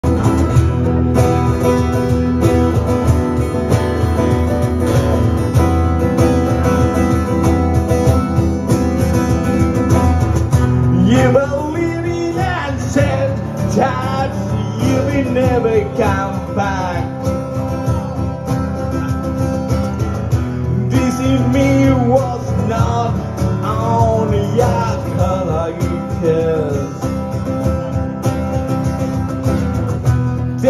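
A live acoustic band playing: two acoustic guitars strumming over a cajon beat, with a melody line, likely a voice, coming in about eleven seconds in.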